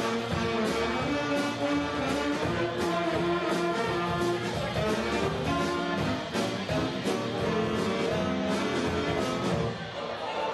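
Big band swing music: a brass and saxophone section playing a swing tune over a drum beat.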